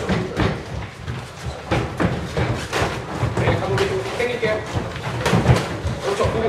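Irregular thuds of boxing gloves landing and feet moving on the ring canvas during a sparring round.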